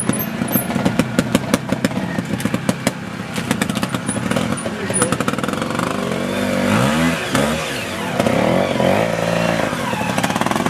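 Trials motorcycle engine running at low revs with a quick, even beat while the bike crawls over the ground. From about six seconds in it is revved up and down several times.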